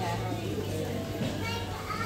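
Shop ambience: indistinct voices over background music, with a steady low hum underneath.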